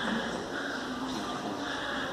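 Steady background hum with faint, indistinct voices.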